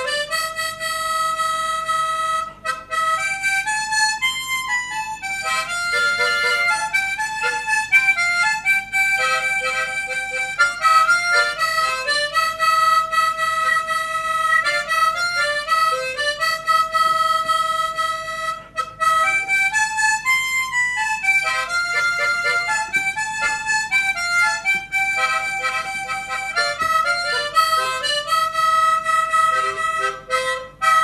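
A harmonica played solo: a song melody of held notes and quick stepping runs, with short breaks between phrases.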